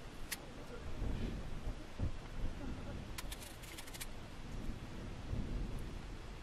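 Knife slicing a cucumber held in the hand, with faint cutting and handling noises and a few light clicks about three to four seconds in, over a low background rumble.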